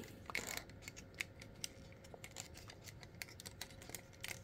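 Faint, irregular clicks of hard plastic parts on the MFT F-03 42-SolarHalo transforming robot toy as its leg and foot joints are moved.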